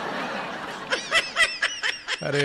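A person laughing: a breathy stretch first, then a quick run of short, high-pitched laughs about a second in.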